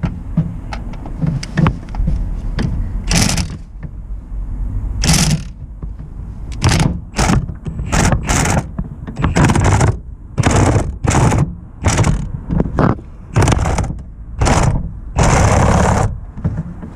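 A ratchet turning a socket on a long extension, working the bolts of a van's gearbox mount bracket. There are light clicks and knocks for the first few seconds, then a run of short ratcheting bursts, about one every half second to a second, with a longer burst near the end.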